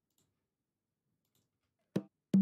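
Near silence broken by a few faint clicks, then one sharper click at the very end: computer mouse clicks while selecting a track in the DAW.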